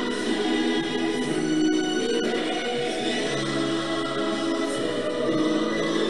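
Background music: a choir singing long held chords that change slowly.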